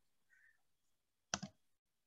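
A single computer mouse click about a second and a half in, sharp and short, with the press and release heard as two strokes close together, in otherwise near-silent room tone.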